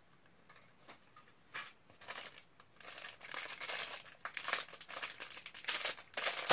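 Plastic crinkling and rustling in quick irregular crackles as packaging or a plastic bag is handled, starting about two seconds in and getting busier toward the end.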